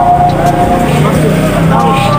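A man's voice talking steadily.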